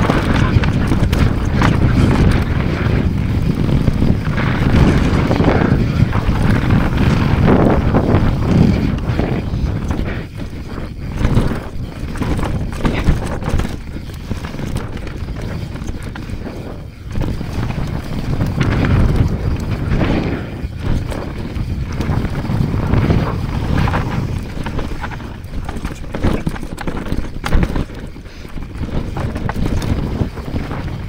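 Mountain bike descending a dirt downhill trail at speed: wind on the microphone and tyres on dirt, with a steady run of knocks and clatter from the bike over roots and bumps.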